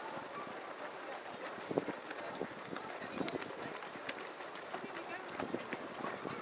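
Footsteps of a large field of runners on a wet tarmac road, a dense irregular patter of footfalls, with voices of runners and spectators in the background.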